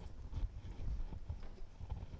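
Irregular soft knocks and low thumps with a few faint clicks.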